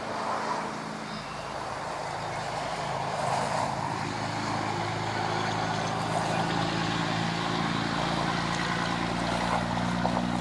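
An engine's low drone, most likely a passing motor vehicle, steady in pitch and growing gradually louder.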